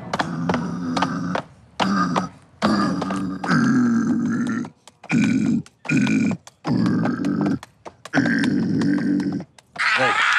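Deep guttural vocal grunts from a man's voice, about eight in a row, each lasting half a second to a second with short pauses between.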